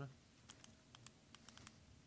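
Faint, irregular light clicks of typing on a computer keyboard, about a dozen over a second and a half, over quiet room tone.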